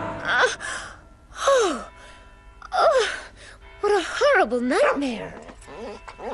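A young woman's voice sighing and yawning as she wakes: four or five drawn-out sounds that fall in pitch, about a second apart, the longest near the end, over soft background music.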